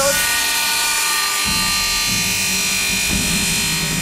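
Sima HandSafe bench circular saw running at speed, a loud steady whine of many tones, while a sausage on a wood block is pushed against the spinning blade; a lower hum joins about one and a half seconds in.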